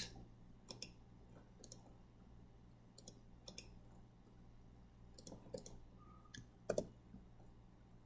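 A computer mouse clicking faintly, a dozen or so sharp clicks at irregular intervals, some in quick pairs, as shapes on a slide are selected, right-clicked and pasted.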